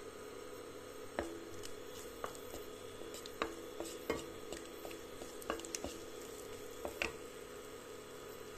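A wooden spatula stirring dried red chillies in a little oil in a non-stick kadhai: several light, separate taps and scrapes against the pan over a faint steady hum.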